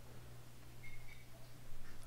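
Quiet room tone with a low steady hum from the recording setup, and a faint brief high tone about a second in.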